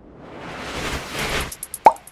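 Logo-sting sound effect: a whoosh that swells up over about a second and a half, then a few quick clicks and a short, sharp pop near the end.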